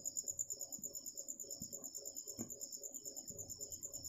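Faint background insect chirping, a fast and even pulse that runs on steadily, with one faint tick about halfway through.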